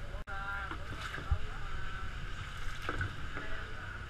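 Boat's engine running with a steady low drone under a constant hiss, with brief voices over it.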